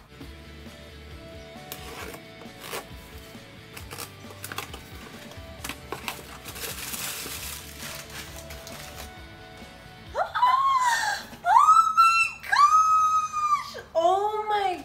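Cardboard shipping box being opened by hand: scattered clicks, tearing and rustling of cardboard and packing for about ten seconds. Then a woman lets out three or four loud, high-pitched, drawn-out squeals of excitement.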